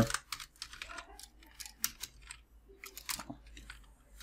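Computer keyboard being typed on: irregular key clicks with short gaps between them.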